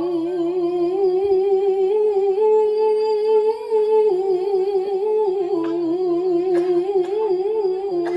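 A woman's solo voice in melodic Quran recitation (tilawah), sung into a handheld microphone. She holds long notes with wavering ornaments, and the line steps down in pitch about halfway through.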